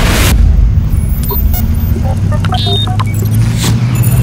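Intro sound effects: a whoosh and boom at the start, then short electronic blips and a brief sweeping chirp, over a steady low drone.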